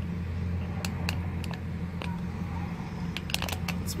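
Car engine idling steadily, a low even hum heard from inside the cabin, with a few faint clicks scattered through it.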